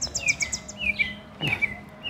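Small birds chirping: a string of short, falling chirps repeated every few tenths of a second, with a quick high trill of about six notes in the first second.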